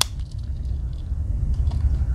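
Wenger Skier Swiss Army knife's main blade snapping shut on its backspring with one sharp click, followed by a few faint ticks of the tools being handled over a low steady hum.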